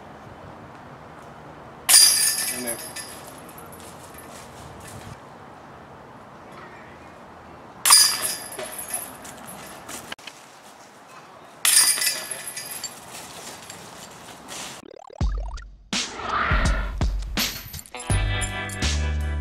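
Disc golf putts hitting the chains of a metal basket three times, each a sudden metallic clink and chain rattle that fades over about a second, at about two, eight and twelve seconds in. Near the end a low swoosh leads into music.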